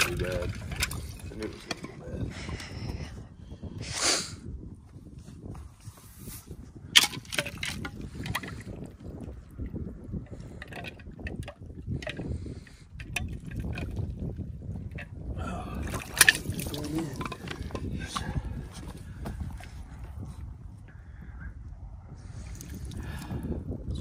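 Water sloshing and trickling as a hand works in an icy tire stock tank, with a few sharp knocks and clicks along the way.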